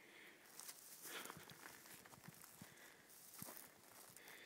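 Faint footsteps on a dry forest floor, with scattered small crackles of twigs, needles and dry grass underfoot, starting about half a second in.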